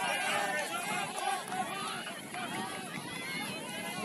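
Several overlapping voices calling out on an ultimate frisbee field, indistinct and continuous, as players and sideline teammates shout during play.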